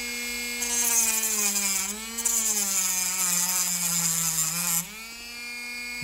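Handheld rotary tool with a cut-off disc running and cutting into a small wooden lure section. The motor's whine drops in pitch as the disc bites, with a gritty cutting hiss that pauses briefly about two seconds in. Near the end the disc comes free and the motor speeds back up.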